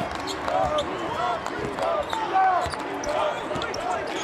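Basketball being dribbled on a hardwood court, with short, repeated sneaker squeaks as players move.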